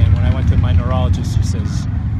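A man speaking, with a steady low rumble underneath.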